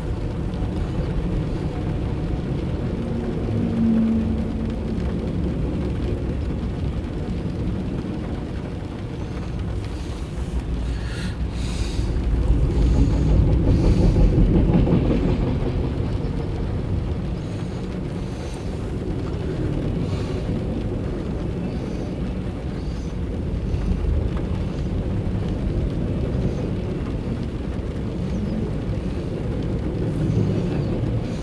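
Loaded autorack freight cars rolling past on the rails: a steady low rumble of wheels on track, swelling louder for a few seconds around the middle, heard from inside a car.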